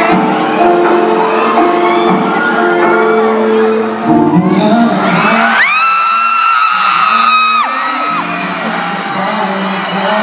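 Live pop concert: the opening music of a song plays under a screaming crowd of fans. Midway the music thins, and one shrill scream nearby is held for about two seconds before the music returns.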